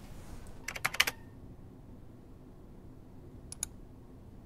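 A quick burst of about five keystrokes on a computer keyboard about a second in, then two quick clicks near the end.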